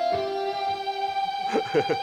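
ROLI Seaboard playing a guitar-like synth lead: one held note, nudged up in pitch just as it starts sounding alone, sustains through, with a second, lower note under it for about a second. A man laughs near the end.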